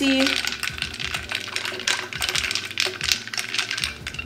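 A straw stirring an iced drink in a clear jar, ice and straw clinking against the sides in quick, uneven clicks.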